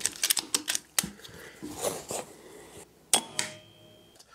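PCP air rifle being worked and fired: a quick run of sharp mechanical clicks in the first second, a soft breath, then one loud sharp shot about three seconds in.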